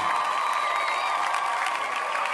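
Logo-intro sound effect: a steady wash of noise like a recorded crowd cheering, with faint wavering whistle-like tones, following on from the intro music's notes.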